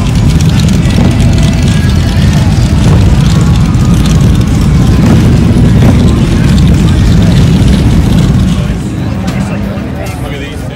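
Loud, steady low rumble of motorcycle engines running, with voices underneath; it eases off near the end.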